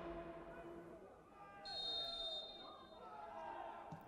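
Intro music fading out in the first second, then faint football-ground sound: distant players' voices and a faint high whistle lasting about a second, near the middle.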